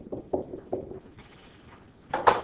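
A pen tapping out short dashes on an interactive whiteboard: about five quick taps in the first second, then quieter.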